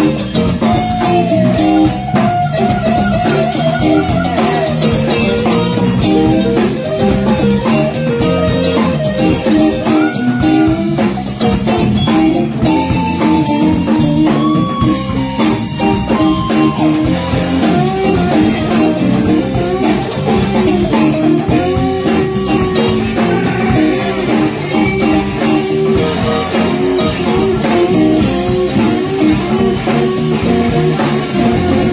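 Live electric blues band playing loud: an electric guitar leads with bent, gliding notes over drum kit, bass guitar and a second guitar.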